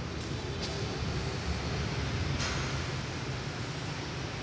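Motorised car turntable rotating under a parked car, its drive giving a steady low mechanical rumble.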